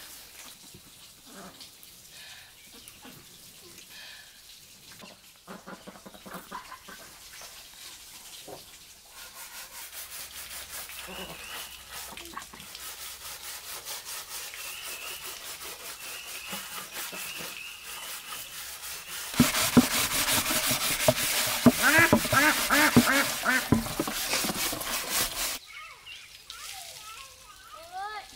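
A flock of white domestic ducks quacking, loudest in a burst of rapid, repeated calls over the last several seconds.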